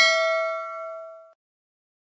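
A notification-bell 'ding' sound effect, struck twice in quick succession and ringing out with a bright metallic tone that fades away just over a second in.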